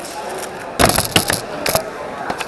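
Rapid plastic clicking of a Cubicle WuQue M 4x4 speed cube being turned fast. About a second in comes a cluster of much louder sharp clacks and knocks.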